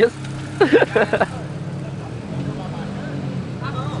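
A car engine idling steadily under the scene, with a man's voice speaking briefly about a second in.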